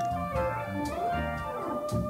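Jazz band music: an electric guitar line with bending, gliding notes over held Hammond organ chords.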